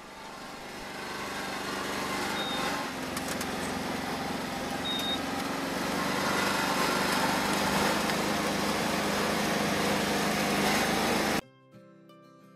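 Iseki riding rice transplanter running steadily at work, a small-engine hum that grows louder over the first couple of seconds. It cuts off abruptly near the end, giving way to quiet plucked-string music.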